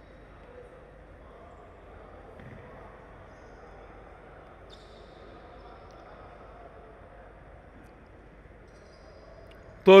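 Faint background sound of an indoor futsal game on a hardwood court: distant players' voices murmuring and calling across the sports hall.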